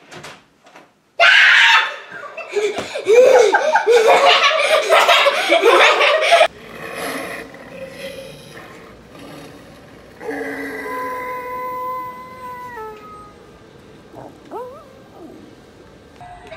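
Loud shrieking and laughter for about five seconds, cut off suddenly. After that come quieter sounds, among them a held tone that steps down in pitch near its end.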